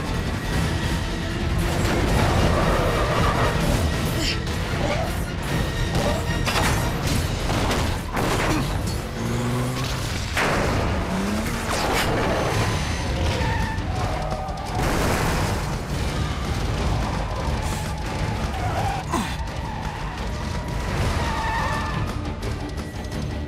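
Action-film soundtrack mix: score music over a fuel tanker crashing and overturning, with several heavy booms and crashes near the middle, and a car's engine and tyres.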